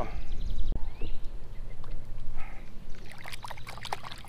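Water splashing and trickling from about three seconds in, as a smallmouth bass held in the hand is lowered into the river and released beside a kayak, over a low steady rumble.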